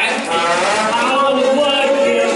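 Live stage singing: one voice holds a long note that slides upward and then levels off.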